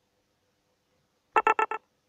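Four quick electronic beeps in a row, steady in pitch, about a second and a half in.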